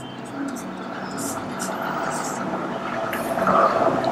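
Marker pen writing on a whiteboard, in short scratchy strokes, over a steady background hum.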